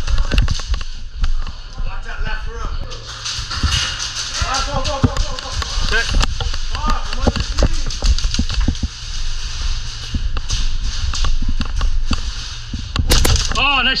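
Indoor airsoft skirmish: rapid, irregular pops of airsoft guns firing, mixed with footsteps and gear clatter, while other players' voices call out in the background.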